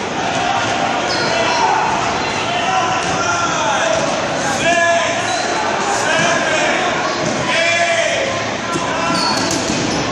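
Dodgeballs bouncing and hitting the floor of a large gym, with players shouting calls across the court.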